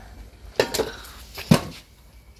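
Shovel striking down at a bottle on concrete steps: two clanking hits about a second apart, the second louder.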